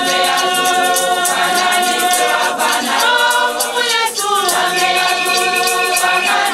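Women's choir singing unaccompanied in many voices, holding long notes. A hand shaker keeps a steady, quick rattling beat under the voices.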